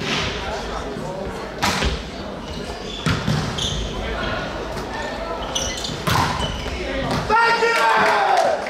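A volleyball struck hard several times during a rally, sharp echoing smacks in a large sports hall, about four over the stretch, over players' calls and chatter. Near the end comes a burst of shouting from the players as the point is won.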